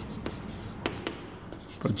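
Chalk writing on a blackboard: a few sharp taps and light scratches as the chalk strokes the board.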